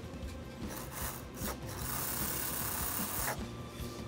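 Hands handling a plastic HO slot car on the track: a steady rubbing, scraping noise lasting about a second and a half in the middle.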